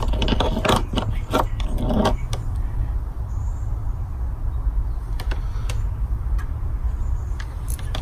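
Light metallic clicks and clinks of small steel parts being handled: diesel glow plugs and multimeter test probes. They come thickly in the first two seconds and a few more times later, over a steady low rumble.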